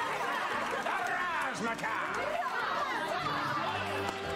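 Several women's voices chattering and laughing at once, a lively overlapping hubbub of a group.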